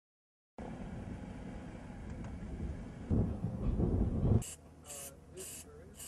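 A low rumbling noise that starts suddenly, swells louder about three seconds in and drops away; a voice follows briefly near the end.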